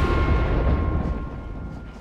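A deep cinematic boom hit from film-trailer sound design, its low rumble dying away over about two seconds, with a faint high tone lingering above it.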